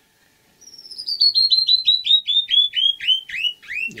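A bird singing a long, loud run of about two dozen chirps, each sliding downward, the whole run falling steadily in pitch at about six notes a second.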